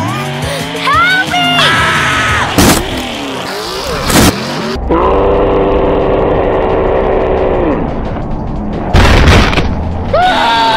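Mud-bogging truck engines revving hard through a mud pit, mixed with music and added sound effects, with sharp loud cracks and a loud crash near the end.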